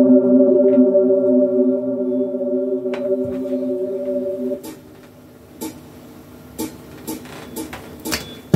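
A sustained drone of several steady tones held together, which stops about four and a half seconds in; after it, a few scattered sharp clicks in a quieter stretch.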